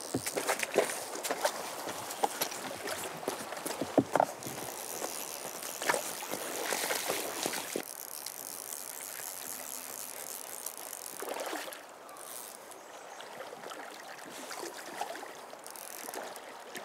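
Flowing river water, a steady rush, with scattered sharp knocks and clicks through the first half.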